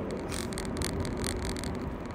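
Car cabin noise while driving on a road: a steady rumble of tyres and engine, with a few short hisses.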